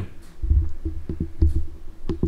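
Handling noise: dull low thumps, about half a second and a second and a half in, with a few soft clicks between, over a faint steady hum.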